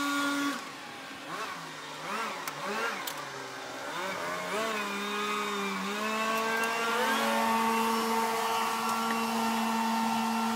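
A motor whining, its pitch wavering up and down for a few seconds and then rising and holding steady from about six seconds in.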